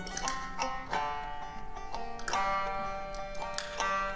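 Live acoustic folk trio playing an instrumental passage: banjo and another plucked string instrument picking notes over held accordion chords.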